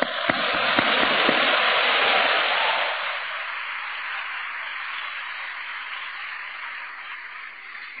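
Audience applauding: a swell of clapping over the first three seconds that then slowly dies away.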